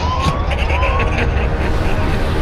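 Electronic alarm sound effect from a spaceship scene: a repeating rising whoop, about two a second, over a deep steady rumble. The whoops stop about a second in.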